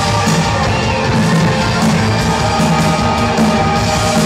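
Live rock band playing a loud, dense instrumental passage: electric guitar and bass guitar over a steady rhythm, heard from within the audience.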